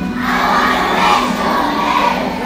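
A large group of young children singing a carol together, loud and close to shouting, holding notes that step from one to the next.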